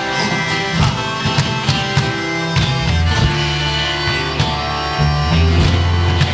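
Live folk band playing an instrumental passage: strummed acoustic guitar and banjo with a drum kit keeping a steady beat over a sustained bass line.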